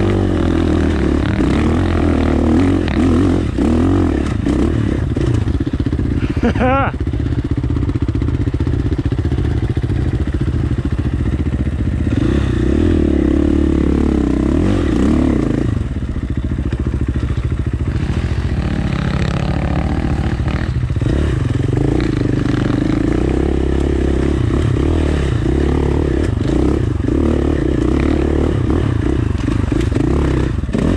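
2019 KTM 450 dirt bike's single-cylinder four-stroke engine running at trail speed, its pitch rising and falling with the throttle and a quick rev about seven seconds in. Rattles and knocks from the bike over rocky ground come through under the engine.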